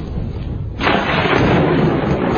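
Thunder from a very close lightning strike: a sudden loud crack a little under a second in, which carries on as a loud, sustained rumble.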